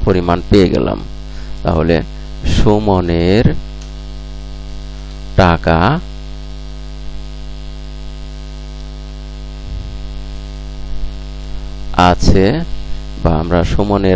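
Steady electrical mains hum, a low buzz with a ladder of evenly spaced overtones, running under a few short bursts of a man's voice.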